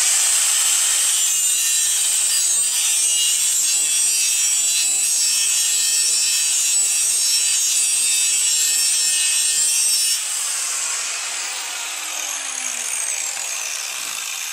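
A 4½-inch Milwaukee angle grinder grinding low-carbon (mild) steel: a loud, steady, high-pitched grinding hiss. About ten seconds in the grinding stops, and the motor winds down with a falling whine.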